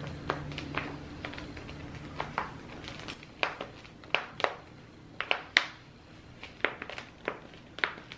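Flexible black plastic nursery pot being squeezed and tapped to free a plant's root ball: irregular crinkling clicks and taps, one sharper than the rest a little past the middle.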